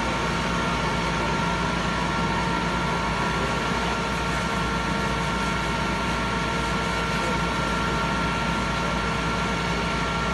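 Fire truck's engine running steadily at idle, driving its water pump while a hose is in use on a burnt car, over a steady hiss.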